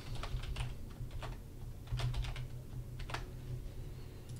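Typing on a computer keyboard: a quick, irregular run of key clicks, over a faint steady low hum.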